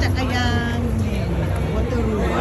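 People talking nearby on a city street over a steady low rumble, likely traffic.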